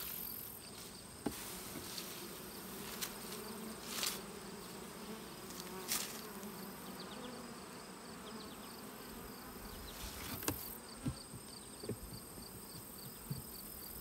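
Honeybees buzzing around an opened hive, a steady hum, with a few sharp knocks as the wooden hive parts and frame are handled.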